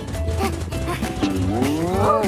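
Cartoon background music with a repeating bass line; about a second and a half in, a low cartoon voice sound comes in, gliding down and then rising in pitch.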